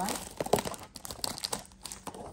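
Clear plastic shrink wrap being torn and peeled off a trading-card retail box, crinkling with scattered sharp crackles.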